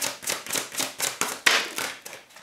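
Tarot cards being shuffled by hand, the deck's cards slapping together in an even rhythm about four times a second, with one louder snap about one and a half seconds in as a card comes out of the deck.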